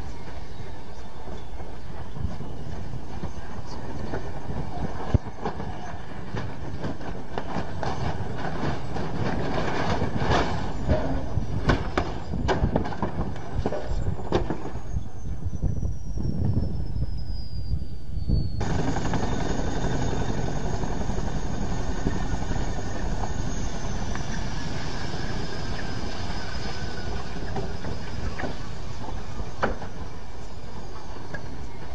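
CH-47 Chinook tandem-rotor helicopter running on the ground with steady rotor chop. About ten to thirteen seconds in comes a run of loud impacts and clatter as the aircraft breaks up, followed by a falling whine.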